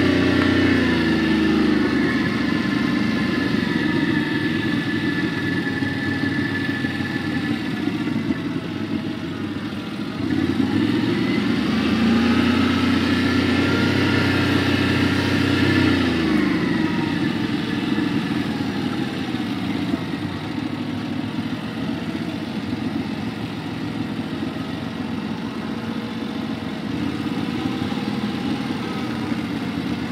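Quad bike (ATV) engines running over rough ground at changing throttle, their pitch rising and falling as they accelerate and ease off. They dip about a third of the way in, surge again until about halfway, then run a little quieter.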